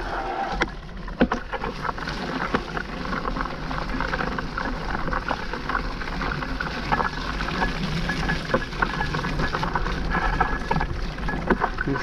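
Mountain bike riding over sticky, wet mud on dirt singletrack: steady tyre and rolling noise with frequent sharp clicks and rattles from the bike over bumps.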